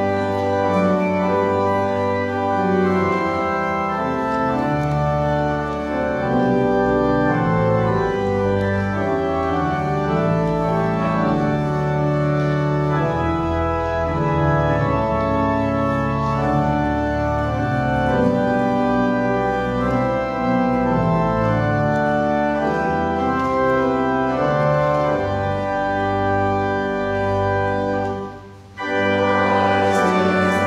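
Organ music: sustained chords held and changing steadily, with a short pause near the end before it resumes.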